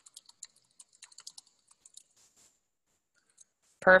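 Typing on a computer keyboard: a quick, uneven run of light key clicks that thins out and stops about two and a half seconds in.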